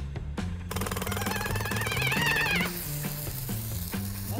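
Jackhammer sound effect rattling fast for about two seconds, starting under a second in, over background music with a stepping bass line.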